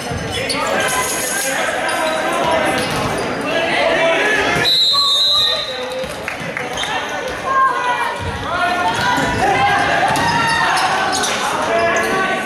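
Volleyball game: players and spectators calling and talking, volleyballs hit with sharp smacks, and a referee's whistle blown once for about a second, a little before the five-second mark.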